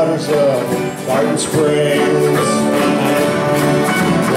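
A live country band playing, with acoustic guitars strumming.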